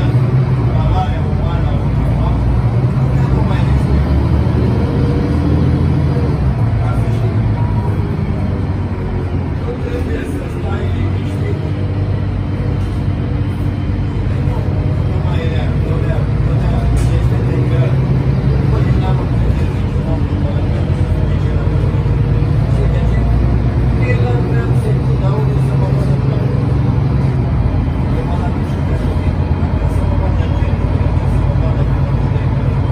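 Interior of an Otokar Kent C18 articulated city bus under way: a steady low engine drone mixed with road and tyre noise, heard from the rear seats.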